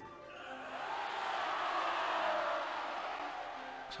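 A large crowd cheering in an animated show's soundtrack, swelling up over about two seconds and fading near the end.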